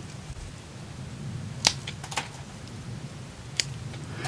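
Pruning shears snipping off this year's candle on a Scots pine, flush at its base: one sharp snip about a second and a half in, a couple of lighter clicks just after it, and another light click near the end.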